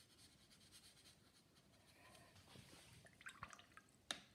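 Near silence: room tone with a few faint small clicks and taps toward the end.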